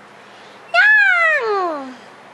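A young baby's single drawn-out coo, starting high about three quarters of a second in and sliding steadily down in pitch over about a second.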